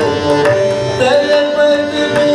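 Hindustani classical singing accompanied by tabla and harmonium: a gliding vocal line over sustained harmonium notes, with regular tabla strokes.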